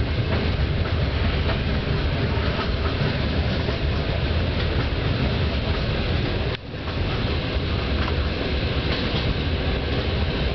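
Regional passenger train running along the line, heard from inside the carriage: a steady rumble of wheels on the rails with faint repeated clicks, and a brief drop in level about six and a half seconds in.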